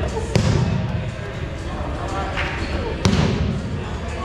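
Foam dodgeballs smacking hard in an echoing gym: a sharp hit just after the start and another about three seconds in, with a fainter one between, over the chatter of players.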